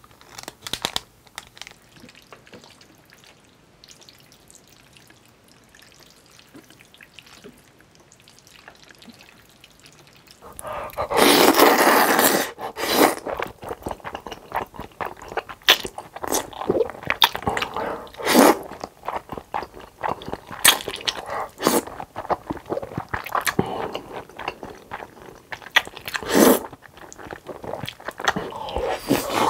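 Close-miked eating of saucy black bean noodles (jjajangmyeon). The first third is quiet apart from a few soft sounds as sauce is squeezed from a packet. Then comes a long loud slurp of the noodles, followed by repeated short slurps and wet chewing.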